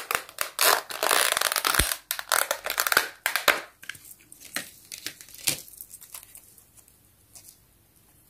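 Thin clear plastic bag crinkling and crackling as it is pulled open and off a small toy figure by hand. Dense crinkling for the first three seconds or so, then a few scattered crackles that die away near the end.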